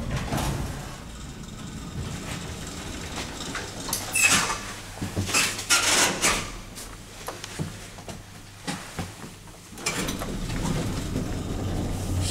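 Elevator sliding doors running, then clicks and handling noise as the car's lit push buttons are pressed, with a steadier mechanical noise near the end.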